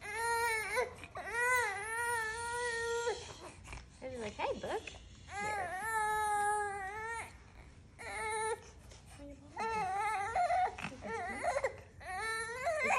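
A five-month-old baby crying: a series of high-pitched wails, two drawn out for about two seconds each, with shorter cries between them and a quick run of short cries near the end.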